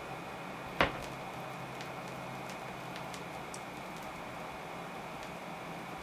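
Diatone DP-EC6 turntable with its stylus at the outer edge of the record, in the lead-in groove: steady surface hiss with a few faint scattered ticks of crackle, and one loud pop about a second in.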